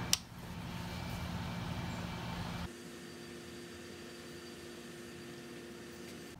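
A single sharp click as a bench power supply is switched on, followed by a steady hum that drops suddenly to a quieter hum with a faint steady whine about two and a half seconds in.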